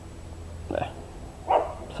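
A dog barking twice, short barks about three-quarters of a second apart, quieter than the voice around them.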